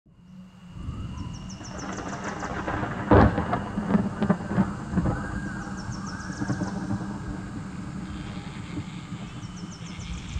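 Thunder: a low rumble fading in, with a loud sharp crack about three seconds in and a few smaller knocks after it. A short run of high bird chirps repeats about every four seconds over a steady low hum.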